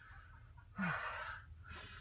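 A man's breathy sigh about a second in, then a short sharp sniff near the end as he notices a smell.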